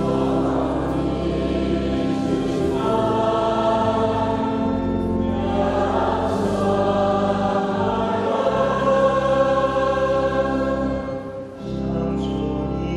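A church choir sings the responsorial psalm of a Catholic Mass in sustained, held chords over a steady low accompaniment, with a brief break between phrases near the end.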